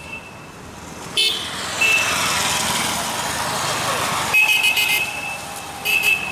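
Road traffic running steadily, with a vehicle horn sounding briefly about two seconds in and again in one long, high, steady blast from about four seconds in.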